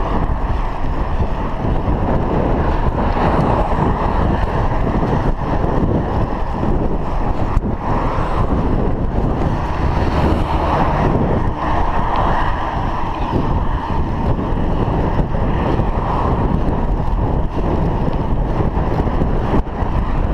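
Wind buffeting the microphone of a chest-mounted action camera on a moving bicycle: a steady rushing noise with a deep rumble, rising and falling slightly in gusts.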